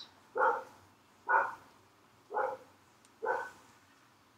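A dog barking four times, short barks about a second apart.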